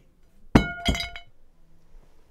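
A ceramic plate dropped onto a carpeted floor: two knocks about a third of a second apart, with a short ringing clink from the plate.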